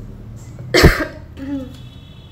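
A person coughs once, loudly and abruptly. About half a second later comes a shorter, softer throat sound.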